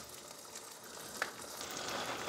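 An egg frying in a HexClad hybrid stainless-steel frying pan, sizzling faintly and steadily, with one small click about a second in.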